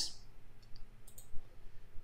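A few faint computer mouse clicks about a second in, against quiet room tone.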